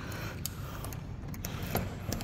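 Key working in a metal doorknob lock and the knob being turned: a few small metallic clicks of the lock and latch, one about half a second in and a couple more near the end.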